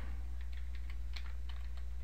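Computer keyboard being typed on: a run of light, quick key clicks over a low steady hum.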